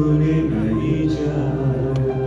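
Live band music with a male singer singing long, held notes.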